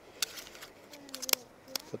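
Hands stretching a new rubber seal band onto a hydraulic cylinder piston: a handful of sharp little clicks and snaps, the loudest about a second and a third in, with a faint brief squeak of rubber just before it.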